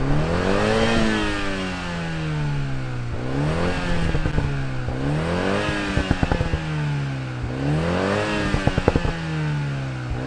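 The 2021 Toyota Supra 2.0's turbocharged two-litre inline-four is revved in a stationary car, about four blips of the throttle, each climbing and then falling back. Sharp crackles come from the exhaust as the revs drop after the later blips.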